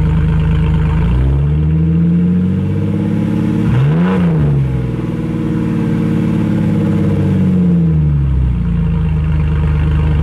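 2004 Jeep Wrangler TJ engine running through a straight-pipe exhaust with no muffler, heard from underneath near the pipe. It idles, rises in revs about a second in, blips sharply to a peak around four seconds, then eases back down to idle near the end.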